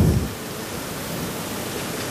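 A steady, even hiss of noise through the sound system, after a low rumble that dies away in the first moment.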